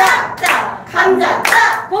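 Several hand claps in a rough beat, mixed with the chanted vegetable word "감자" (potato) of a clapping game.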